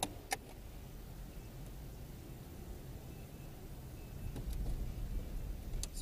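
Low, steady rumble of a car's engine and cabin heard from inside the vehicle, with a couple of sharp clicks near the start; the rumble grows louder about four seconds in.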